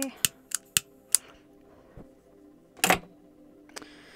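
A just-refilled butane lighter clicked over and over without catching: a quick run of five sharp clicks in the first second, a louder snap about three seconds in, then one more click.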